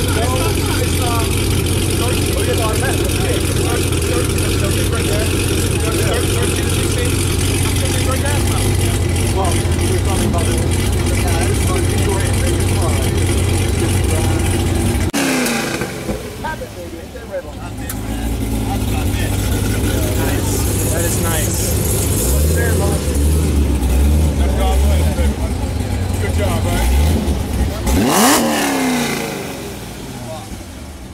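Chevrolet Camaro ZL1's supercharged V8 idling at the exhaust with a steady low burble. About halfway the sound drops away suddenly and then the engine note returns, and near the end a short rev rises and falls.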